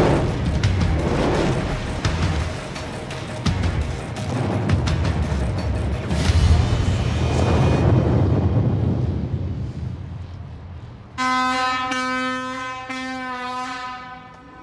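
Deep rumble of an underground rock blast with explosives, echoing down a tunnel with sharp cracks through it, dying away after about ten seconds. Near the end a steady horn sounds three times in a row.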